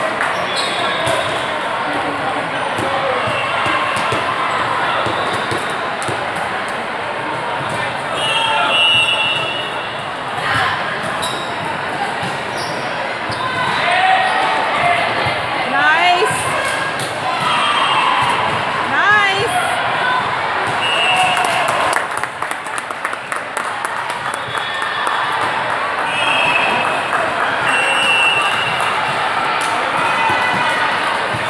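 Din of a large indoor volleyball hall: a volleyball being struck and bouncing on the court, shoes squeaking on the sport floor, and players and spectators calling out, all echoing. Short high tones cut through a few times.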